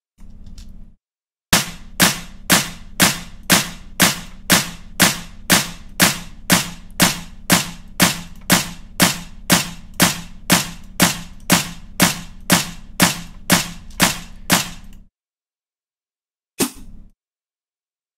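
Layered clap and snare samples played back through a compressed drum bus, a sharp hit about twice a second for some thirteen seconds over a low steady body underneath. Near the end a single snare sample is auditioned once.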